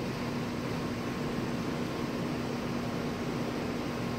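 Steady room tone: an even hiss with a low, steady hum underneath, and no distinct events.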